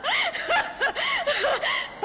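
A woman laughing in a string of short, high-pitched rising-and-falling bursts.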